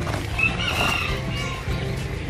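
Background music, with a rooster crowing once for just under a second near the middle.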